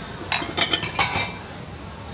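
Bowls and metal utensils clinking and clattering: a quick run of sharp clinks starting about a third of a second in and lasting about a second.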